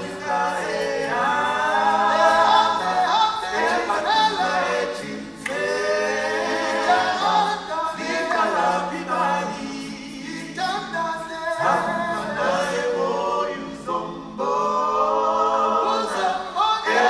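A group of voices singing together in harmony without instruments, in sung phrases broken by short pauses.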